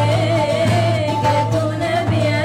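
Two young women singing together, accompanied by a long-necked saz (bağlama) strummed by one of them.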